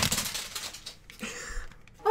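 Plastic candy wrapper of a Super Lemon candy crinkling and crackling as it is pulled open, busiest in the first second and then dying away to a few faint rustles.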